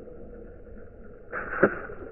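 A skipping rock striking the lake surface: splashing with one sharp smack about one and a half seconds in.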